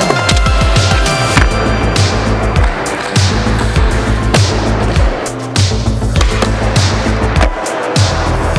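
Background music with a steady beat, over the sound of skateboarding: the board's wheels rolling on a smooth concrete floor, with sharp knocks of the board on tricks and landings.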